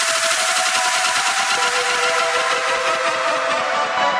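Background music: a new track starts abruptly and loudly, with a hissing wash of noise over sustained tones.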